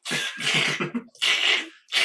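Laughter in three breathy bursts, each about half a second long.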